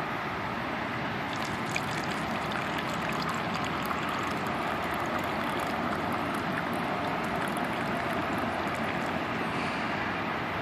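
Vodka pouring from a plastic bottle into a plastic cup, a fine trickling and splashing that starts about a second in and stops near the end. Under it runs a steady background rumble.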